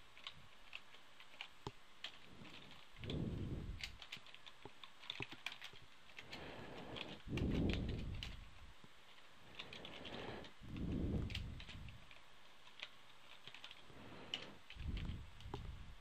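Faint typing on a computer keyboard: scattered, irregular keystrokes as a command is entered. Four soft, low rumbles of about a second each come in between the keystrokes.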